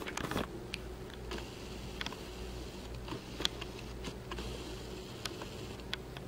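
Quiet room tone with a steady low hum, and a few faint, scattered clicks and rustles from a handheld camera being moved about.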